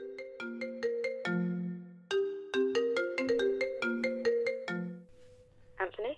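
Mobile phone ringtone: a melody of short notes played through twice, stopping about five seconds in as the call is answered.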